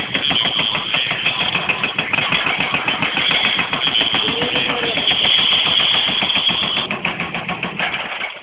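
Excavator-mounted hydraulic breaker hammering the concrete base of a chimney in rapid, steady blows, many a second, with the excavator's diesel engine running underneath.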